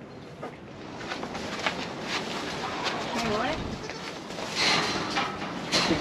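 Bottle-fed kid goat sucking at a rubber bottle nipple: irregular short wet clicks and smacks, with a louder rush of rustling noise near the end.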